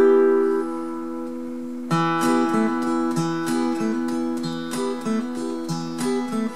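Acoustic guitar with a capo, played in D minor. A chord rings and fades, then about two seconds in a fresh strum starts a run of picked notes with hammer-ons on the third string, the song's intro figure.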